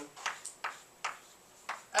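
Chalk striking and scraping on a blackboard in about five short, sharp taps as an arrow is drawn.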